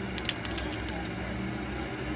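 Cooked lobster tail shell being cracked and broken apart by hand: a quick run of sharp cracks and snaps in the first half-second, over a steady low hum.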